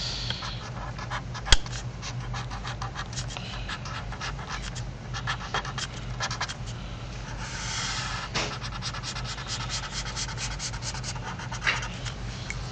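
Felt-tip highlighter scratching on paper in quick back-and-forth strokes, drawing a zigzag outline. There is a sharp click about a second and a half in.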